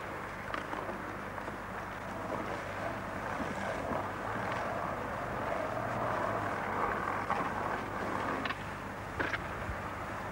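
Skateboard wheels rolling over paving slabs, a steady rough hiss that swells in the middle, with a few sharp clacks of the board: one about half a second in and two near the end.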